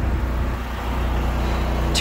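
Steady low mechanical hum, like an idling engine, with a faint hiss above it.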